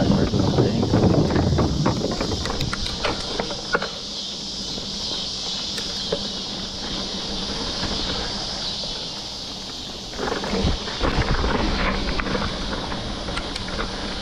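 Mountain bike rolling along a dirt trail: tyre noise with rattles and clicks from the bike, louder in the first couple of seconds and again in the last few. Under it runs a steady high chorus of insects.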